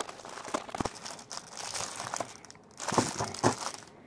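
Cardboard box being opened and a plastic-wrapped plastic lunch box pulled out: rustling cardboard and crinkling plastic film, with scattered small clicks and knocks that grow louder about three seconds in.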